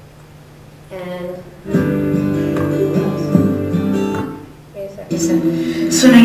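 Acoustic guitar music, its chords sounding from a little under two seconds in and dying away after about four seconds.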